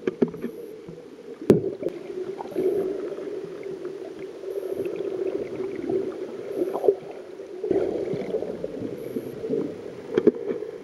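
Muffled underwater noise of water moving around the camera, swelling and fading unevenly, with a sharp knock about a second and a half in and a few fainter clicks.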